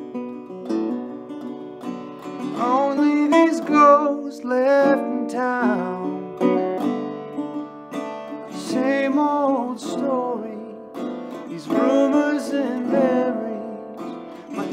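Metal-bodied resonator guitar in open D tuning, played fingerstyle with a slide: a melody line of gliding notes with slide vibrato over ringing open strings, each phrase starting with a picked attack.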